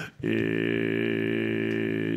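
A man's voice holding one long vowel at a steady pitch for about two seconds, starting just after a short pause: a drawn-out Japanese hesitation sound ("ēē") in the middle of his answer.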